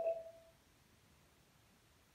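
A short electronic chime from the Amazon Fire TV's Alexa voice search, played through the TV, fading out about half a second in; then near silence.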